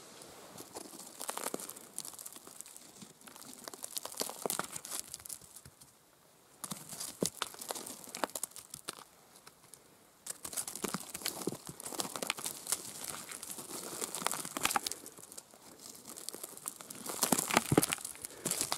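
Dry pine needles and gravelly soil rustling and crackling under a hand as a mushroom is dug out and picked, in irregular bursts broken by two brief silences.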